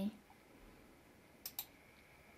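Two quick computer mouse clicks about a second and a half in, close together, over quiet room tone.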